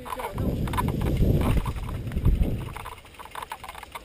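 Mountain bike rattling and knocking as it rides down a rough rocky trail and steps, with a dense rumble of tyre and frame impacts for about the first two and a half seconds, then lighter scattered ticks.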